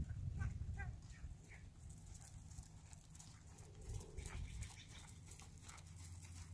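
A few short high-pitched animal calls in the first second and a half, then faint, soft hoofbeats of a pony moving on arena sand over a low rumble.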